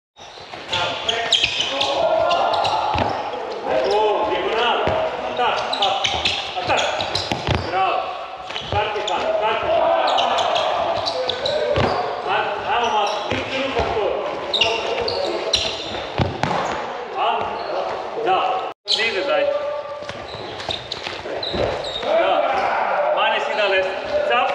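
Handballs repeatedly bouncing and thudding on a wooden sports-hall floor and being caught and blocked, with indistinct voices, echoing in a large hall.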